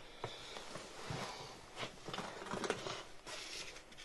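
Faint rustling and light crinkling with scattered small clicks as a hand rummages inside a plush fabric basket and pulls out a sheet of stickers.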